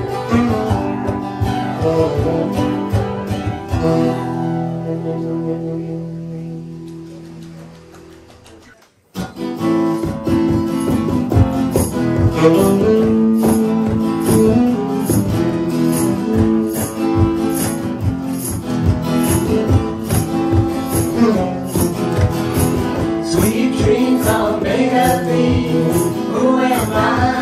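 Live band music with saxophone, keyboard and guitar: a song ends on a held chord that fades away over about five seconds, then cuts off to a moment of silence about nine seconds in. A new song starts straight after with a steady beat and continues.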